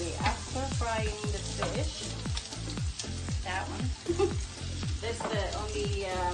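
Sliced onions sizzling in hot oil in a frying pan, stirred and scraped with a wooden spoon. Background music with a steady beat plays over it.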